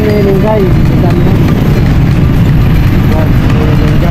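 Riding noise on a motor scooter: a steady low rumble of wind buffeting the microphone over the scooter's engine and the road. A voice cuts in briefly near the start and again around three seconds in.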